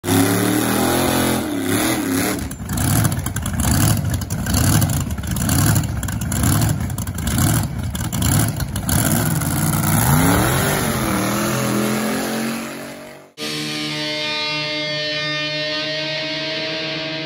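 Drag-racing engine revving hard at the start line in rough, rising and falling bursts, with a pulsing rhythm through the middle. It cuts off suddenly about thirteen seconds in, and electric-guitar rock music begins.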